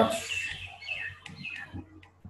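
Several short, high chirps, like small birds in the background, spread through a pause in speech.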